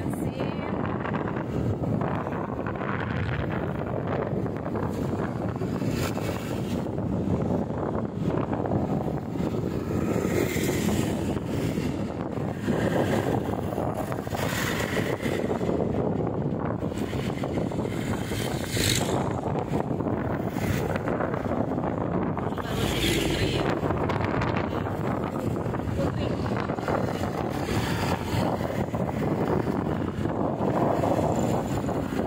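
Wind buffeting the microphone over the steady running of a motorcycle and its tyres on the road, heard from the rider's seat, with a few brief louder swells as the ride goes on.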